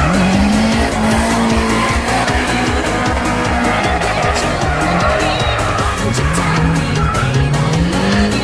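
Two drift cars sliding in tandem, engines held high in the revs with the pitch climbing at the start, dipping about halfway and climbing again near the end, over screeching tyres. Music with a steady beat plays along.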